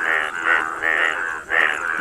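Indian bullfrog males giving their breeding call, a repeated note about twice a second. It is the mating call made by inflating their paired vocal sacs.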